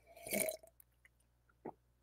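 A short, quiet mouth or throat sound from a man, such as a gulp, followed near the end by a faint click.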